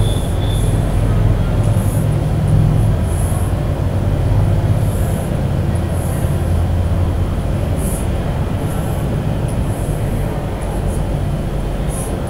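Chalk scratching on a blackboard in short, intermittent strokes, over a steady low rumble.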